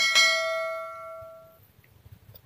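A bell-ding sound effect from a subscribe-button animation: one bright struck ding that rings on and fades out over about a second and a half.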